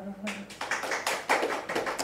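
A small group clapping by hand as the last held note of a man's live singing ends, with some voices under the claps.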